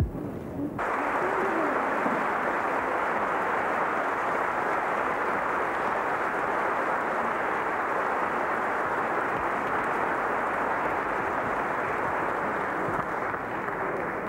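Audience applauding: a dense, steady roll of clapping that starts about a second in and begins to thin near the end.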